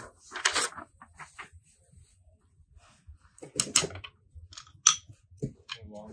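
Plastic wrapping and paper being handled, rustling and crinkling in short spells with a quiet stretch in the middle.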